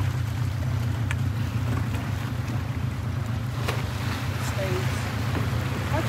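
A boat's motor running steadily at low revs, with a couple of faint clicks over it.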